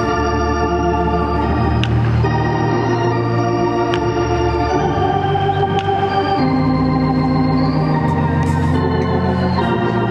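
Organ music: sustained chords that change every second or two, steady and loud throughout.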